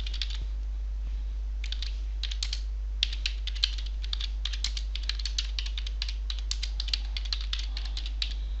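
Computer keyboard being typed on in quick runs of keystrokes, with a pause of about a second near the start, over a steady low hum.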